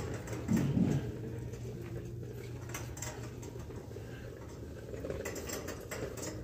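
Shopping cart being pushed along a store aisle floor, its wheels and wire basket giving a steady fine rattle over a low steady hum.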